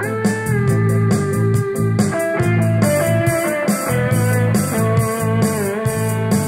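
Playback of a multitrack song made from an arranger-keyboard backing with an overdubbed electric guitar track: a steady beat, bass, and long held melody notes that bend slightly. The guitar track has just been shifted to line up with the backing and is judged in time.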